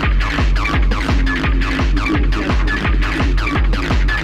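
Fast hardtek electronic track: a kick drum beats several times a second, each hit falling in pitch, under dense synth lines and short high stabs.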